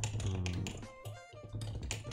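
Typing on a computer keyboard: a run of irregular keystrokes over a steady low hum.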